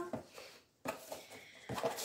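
Faint rustling of a cardboard gift box and its ribbon being handled and opened, with a few light taps near the end.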